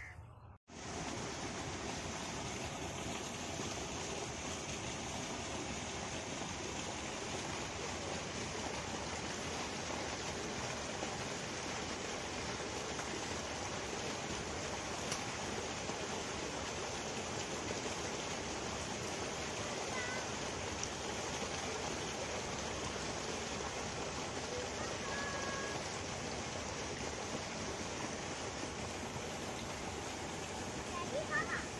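Steady, even rushing of running water, like irrigation water flowing along a field channel, with a few faint bird chirps about two-thirds of the way in.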